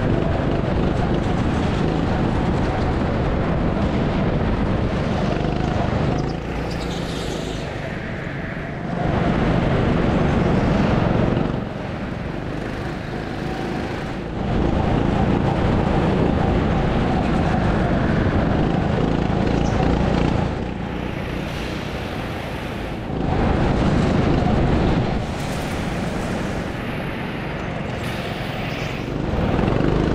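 Go-kart running at speed, heard from the kart's onboard camera. The level jumps up and down abruptly every few seconds where clips are cut together.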